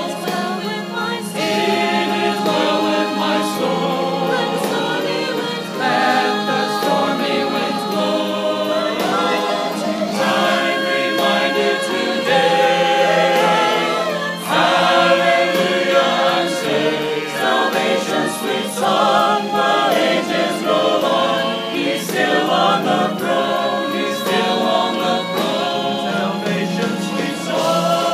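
Mixed church choir of men and women singing.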